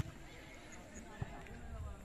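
Faint, distant voices of people out on an open playing field, with a sharp click right at the start and a dull knock just past a second in.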